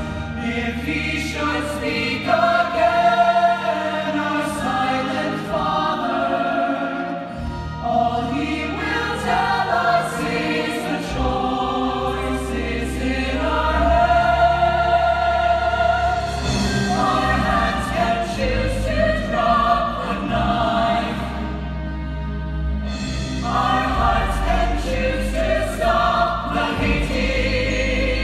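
A musical-theatre chorus singing the show's finale in full harmony over instrumental accompaniment, with long held notes and a sustained bass.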